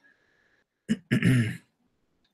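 A man clearing his throat once: a short sharp catch, then a brief rasping sound of about half a second.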